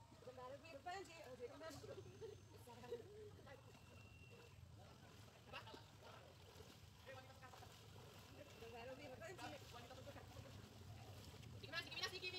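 Faint, distant voices of people calling and talking over a low steady background rumble.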